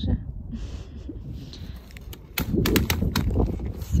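Wind buffeting the microphone with a low rumble. About halfway through, a pram's quilted fabric hood is pulled forward: rustling and a few sharp clicks from the hood frame.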